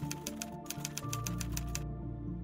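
Typewriter keystroke clicks, about seven a second with a short break about half a second in, stopping just before the end. Background music with held low notes plays under them.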